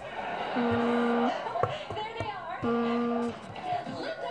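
Phone ringing tone on an outgoing call: two steady beeps of under a second each, about two seconds apart, with a sharp click between them.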